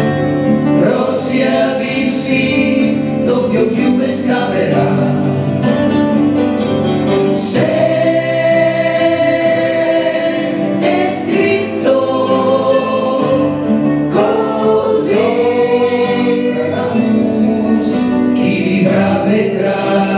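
Live band performing: several voices, a woman's and men's, singing together in harmony with long held notes, over guitar accompaniment.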